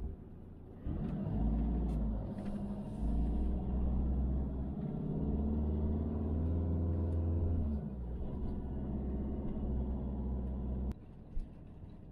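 Motorhome engine running while driving, heard from inside the cab. Its note rises and falls with the throttle, and it cuts off suddenly near the end.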